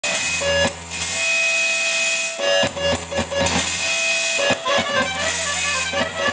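Free-improvised noise music from live electronics: held electronic tones over a low drone that drops out about a second in and returns, with scattered crackling clicks.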